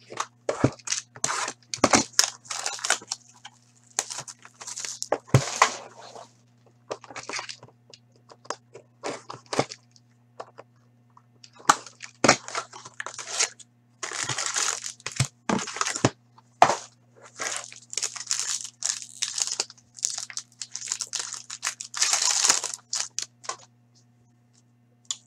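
Hockey card boxes and packs being opened by hand: irregular bursts of wrapper and cardboard tearing and crinkling, with sharp clicks and taps as cards and boxes are handled. A faint steady hum runs underneath.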